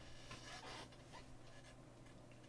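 Near silence: room tone with a faint steady low hum and a few faint soft noises in the first second.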